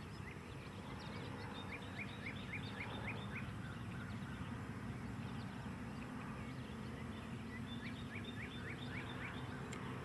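Distant light-aircraft engine, the CH 750's Continental Titan IO-370, giving a low, steady drone as the plane approaches. Twice over this drone, a bird gives a quick series of short rising chirps at about four a second.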